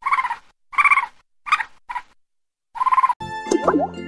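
Squirrel chattering: five short, rapidly pulsed call bursts with pauses between them. Children's music starts about three seconds in.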